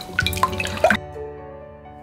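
A whisk beating raw eggs in a glass bowl, making a few quick wet clicks and splashes in the first second. Background music with sustained notes plays throughout and is heard alone in the second half.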